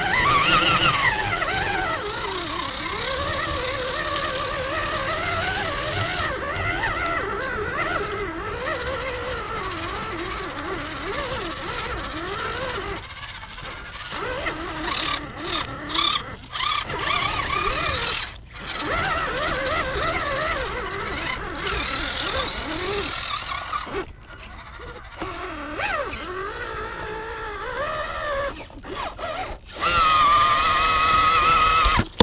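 Onboard sound of a small WPL scale RC truck's electric motor and gearbox whining, the pitch rising and falling with the throttle as it drives over rocks. In the second half the whine cuts out briefly several times as the throttle is let off.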